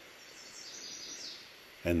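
Faint high bird chirps over a low steady outdoor background hiss, between about half a second and a second and a half in.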